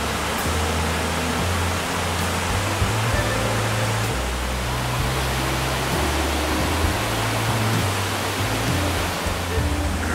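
Steady rush of the man-made waterfalls cascading over rock ledges into the Mirage volcano lagoon, with music and its slow-moving bass line playing underneath.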